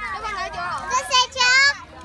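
Children's high-pitched voices shouting and calling out at play, with the loudest, highest shouts about a second and a half in.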